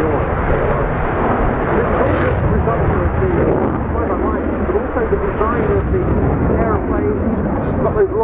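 Twin jet engines of an F/A-18C Hornet flying a slow display pass, a loud steady rumble, with a public-address announcer's voice over it.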